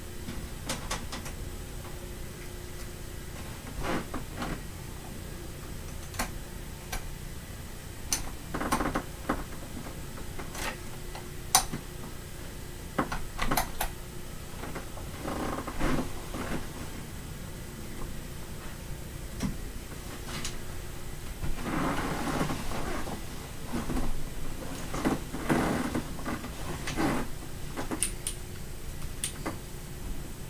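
Four electric fans running together at medium speed: a Lasko high-velocity floor fan and Lasko, Pelonis and vintage Holmes box fans, giving a steady rush of air with a faint hum. Over it come scattered knocks, clicks and bursts of rustling as someone moves about on a bed.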